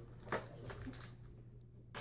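Quiet room with a low steady hum and one short sharp click about a third of a second in, as small candy packets are handled on a table.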